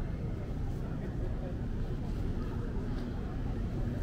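Busy city street ambience: a steady low rumble with the indistinct voices of people around.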